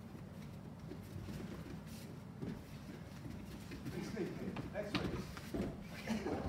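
Bare feet stepping and shuffling on foam gym mats as two men grapple, with scattered soft thuds over a low room hum; faint voices creep in toward the end.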